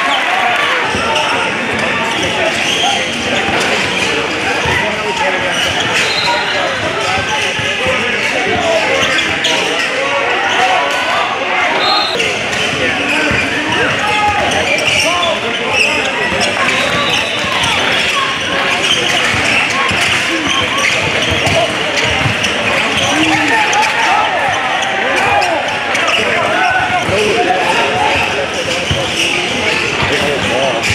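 A basketball being dribbled and bounced on a hardwood gym floor during a game, against the steady chatter of players and spectators in the gym.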